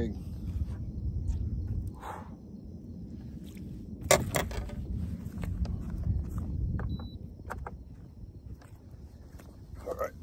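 Footsteps and handling knocks on a bass boat's deck, with one sharp knock about four seconds in, over a low rumble.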